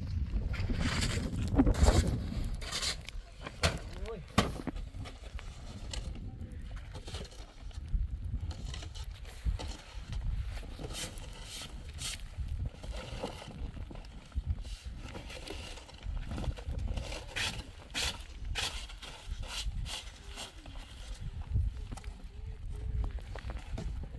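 A shovel scraping and knocking on snow and stone as snow is cleared, in irregular strokes, over a low wind rumble on the microphone.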